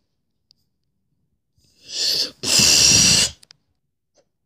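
A mouth-made sound effect for a toy fight: a short breathy hiss, then a loud, rough blast of breath about a second long, a little after the middle.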